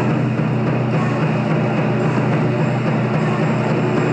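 Taiko drums played fast by two drummers, the strokes so dense that they run together into a steady, unbroken wall of drumming with no single beat standing out.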